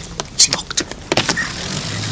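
A door being unlocked and opened: several clicks and rattles of the lock and handle.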